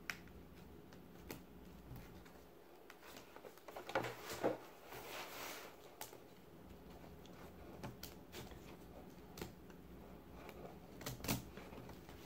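Scissors and hands working at the edge of a woven placemat, cutting the thread that holds its fabric lining: faint scattered light clicks, with a short stretch of rustling about four to five seconds in.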